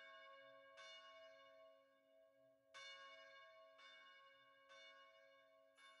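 Faint bell chimes: about six strikes at uneven spacing, each ringing on over a steady held tone.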